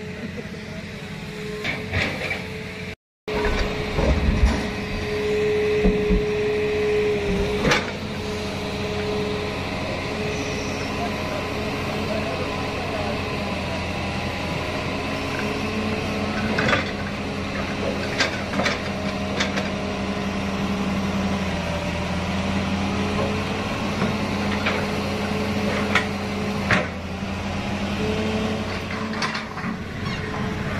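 Hydraulic excavator's diesel engine running steadily, with a short steady whine a few seconds in and sharp metallic clanks now and then.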